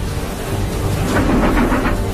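A loud, deep rumbling wash of noise that swells about a second in.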